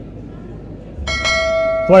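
A bell struck once about a second in, ringing on with several steady overtones. It is the quiz's time-up signal: the team gave no answer, and the question passes to another school for a bonus.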